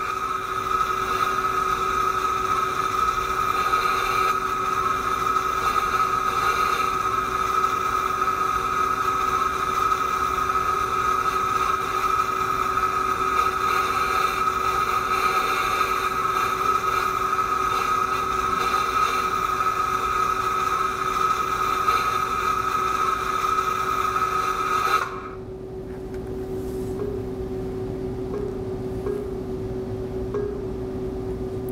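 Simulated flux-cored arc welding sound from a Lincoln Electric VRTEX 360 virtual welding trainer: a steady hiss with a steady whine running through it, cutting off suddenly about 25 seconds in as the weld pass ends, leaving a faint hum.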